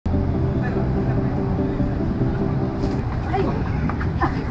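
Steady low engine hum of street traffic, with people's voices coming in about three seconds in.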